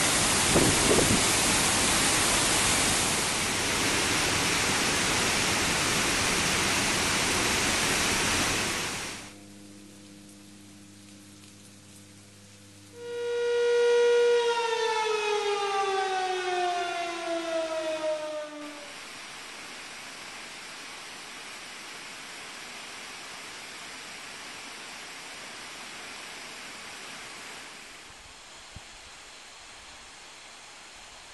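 Loud, steady roar of the Cascata delle Marmore waterfall for the first nine seconds or so. Then, in a much quieter spot, a warning siren sounds loudly about 13 seconds in, its pitch sliding steadily down over about five seconds as it winds down. This is the siren that signals the upstream gates are opening and the waterfall's flow is about to rise. A quieter steady rush of water remains afterwards.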